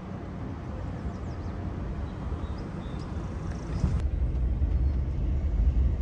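A camper van driving slowly, heard from inside the cab as a low, steady rumble of engine and road noise. It grows louder about four seconds in.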